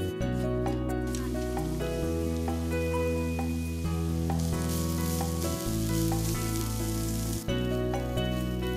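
Thick potato strips deep-frying in hot oil: a steady, dense sizzle that grows louder partway through and cuts off suddenly near the end, over background music.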